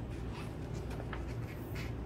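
Glossy paper pages of a large magazine-style book being handled and smoothed flat, a run of soft rustles and scrapes over a steady low hum.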